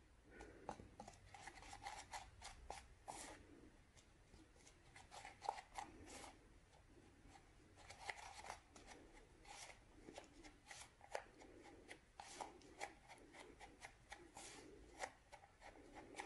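Faint, irregular scraping and clicking of a metal spoon stirring Saltwash powder into chalk paint in a small plastic tub; the mix is still a thick, lumpy paste.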